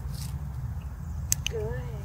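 A woman says "Good" in praise near the end, over a steady low rumble, with two sharp clicks just before the word.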